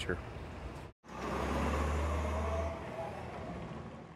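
After a brief break, a heavy truck's engine runs with a steady low rumble, which eases and grows quieter a little under two seconds later.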